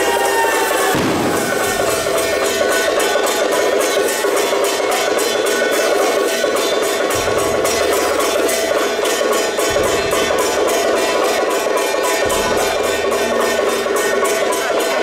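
Temple procession percussion: drums, large hand cymbals and gongs beaten together in a fast, steady rhythm, with occasional deeper drum strokes.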